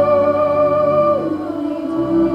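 High school choir singing in a choral Broadway medley: a long held note that ends a little over a second in, sliding down into lower held notes.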